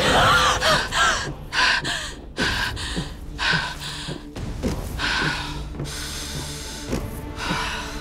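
Dramatic background score with a baby's wailing cry over it in the first second or so. Then come short, breathy gasps about once a second.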